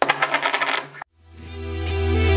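Poker chips dropped onto a wooden table, a rapid clatter of clicks lasting about a second. After a brief silence, music with sustained synth tones and deep bass fades in.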